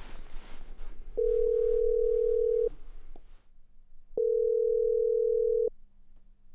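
Telephone ringing tone of an outgoing call: two long, steady, low beeps, each about a second and a half, with a pause of about the same length between them, after a faint rustle at the start.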